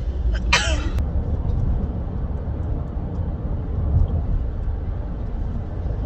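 Steady low road and engine rumble heard inside a moving minivan's cabin. A short vocal burst, a laugh or cough, comes about half a second in.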